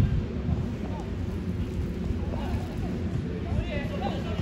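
Uneven wind rumble on the phone's microphone at an outdoor football pitch, with faint distant voices in the background.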